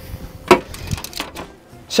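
A sharp click about half a second in, then a few lighter clicks and knocks: hard tools and kit being handled on a workbench. Faint background music underneath.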